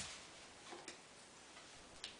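Near silence: quiet room tone with a faint click at the start and a couple of faint ticks just under a second in.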